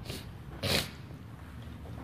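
Two short breathy snorts through the nose, a faint one at the start and a louder one just under a second in.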